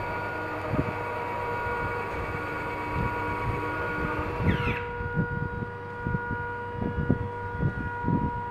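95-degree electric rotating retract on a P-40 RC model's main gear running, its small geared motor whirring for about four and a half seconds as the leg swings up and turns the wheel into the wing. It stops suddenly, with a short rise in pitch just before. A few low knocks follow.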